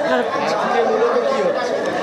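Chatter of many voices talking at once, with no single clear speaker.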